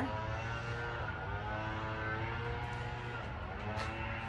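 An engine running steadily, its pitch drifting slowly down.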